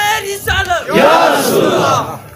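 A crowd of men calling out together in a loud, drawn-out chanted response, with a brief break about half a second in.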